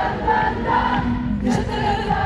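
Many voices singing together in unison over live band music: a concert audience singing along.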